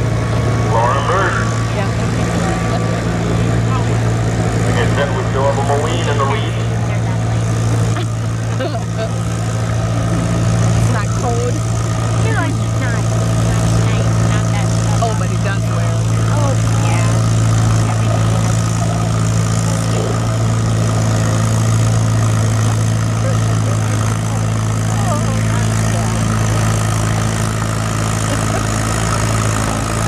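Tractor engines idling steadily: an even low hum with no revving, and indistinct voices in the background.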